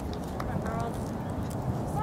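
Distant voices calling out across an outdoor soccer field, brief and faint, over a steady low rumble, with a few short sharp knocks.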